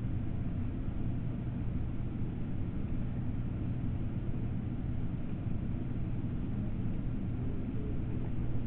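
Steady low background hum with an even hiss, unchanging throughout, with no distinct events.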